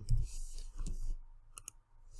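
A couple of quick computer mouse clicks about one and a half seconds in.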